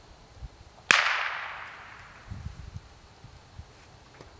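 A single sharp gunshot about a second in, fading in a long echo over about a second and a half: a blank fired to mark the throw for a retriever running marks.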